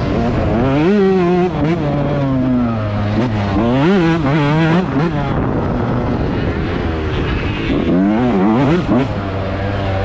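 Yamaha YZ125 two-stroke motocross engine ridden hard, revving up and dropping back repeatedly as the throttle is worked. There are quick sharp rises and falls in pitch about a second in, around four seconds in and near the end, with steadier held stretches between.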